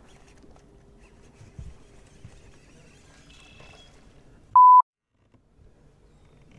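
A short, loud, single-pitch censor bleep about four and a half seconds in, edited in over a word and cut straight into dead silence. Before it there is only faint low background with a few light knocks.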